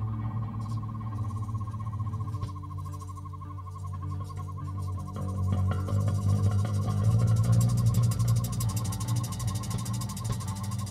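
Improvised electronic drone music: sustained low bass tones under a warbling higher tone, swelling louder about six seconds in.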